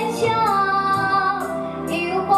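A young girl singing a slow melody into a handheld microphone, holding each note for about a second, over instrumental accompaniment.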